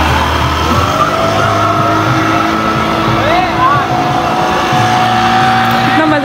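Outboard engine of a passenger motorboat running as the boat heads away down the channel, with its wake churning the water. Voices are heard in the background.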